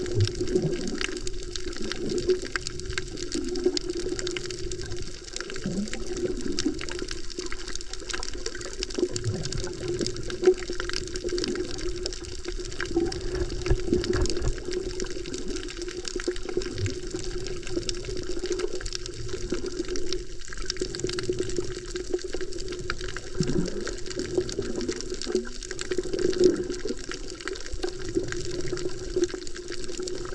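Underwater sound picked up by a camera held below the surface while snorkeling over a reef: a continuous muffled rush of water with scattered low swooshes and bubbling, over a steady low hum.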